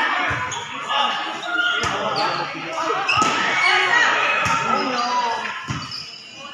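Volleyball rally: about five thuds of the ball being struck, roughly every second and a half, with players and onlookers shouting over them, echoing in a large covered court.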